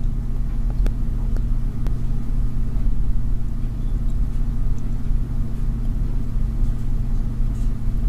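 Steady low-pitched hum with no speech, and two faint clicks in the first two seconds.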